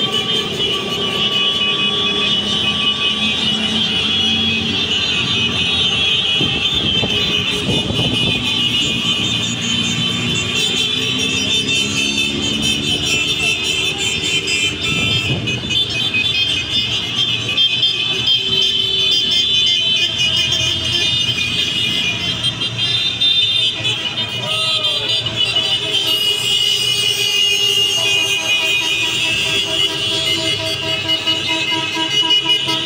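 A convoy of motorcycles and cars passing along a street: a continuous din of engines, with revving rising and falling around the middle, and music playing over it.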